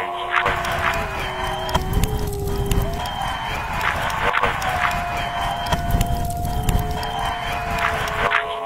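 Music with long held notes that shift in pitch every second or two, over a dense, rough backing.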